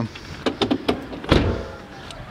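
Opel Zafira's driver's door being shut, with a single solid thud about a second and a half in, after a few light clicks.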